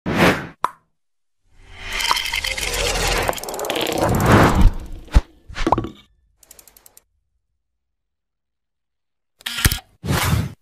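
Animated-intro sound effects: a short pop, then a noisy swell lasting about three seconds that ends in a sharp hit, a second hit, and a quick run of faint ticks. After a couple of seconds of silence, another short burst comes near the end.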